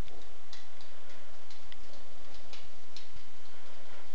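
Faint, irregular small ticks and clicks, a few a second, over a steady low hum.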